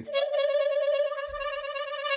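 Diatonic harmonica playing a single held draw note on hole 5, steady in pitch with a rapid pulsing waver from air bellowed through the hole.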